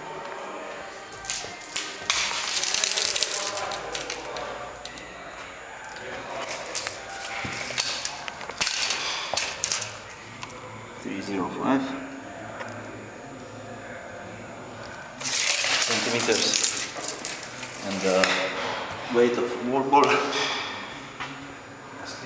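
A steel tape measure's blade being pulled out and run back in, rattling in a few bursts of a second or two each.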